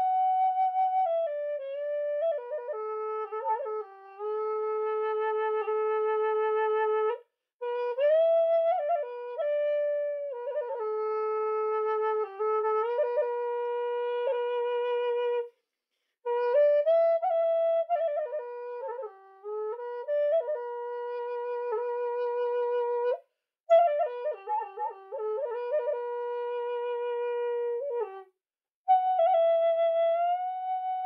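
A thick-walled bamboo Native American-style flute (pimak) plays a slow melody in long held notes, with bends between them. It is broken into phrases of about seven to eight seconds by short pauses.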